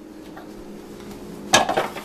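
The clear plastic lid of a food processor clatters once against hard surfaces about one and a half seconds in as it is taken off and set down, over a faint steady hum.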